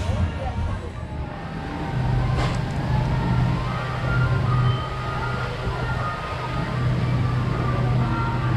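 Outdoor theme-park ambience: voices and music in the background over a steady low hum, with one sharp click about two and a half seconds in.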